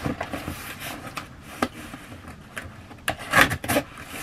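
Cardboard shipping box being handled and opened: scraping and rubbing on the cardboard, then a louder ripping noise a little after three seconds in as a strip is pulled off the box's flap.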